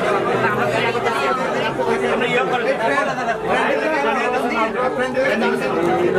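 Several people talking at once: overlapping conversation and chatter in a large, echoing room, with no one voice standing out.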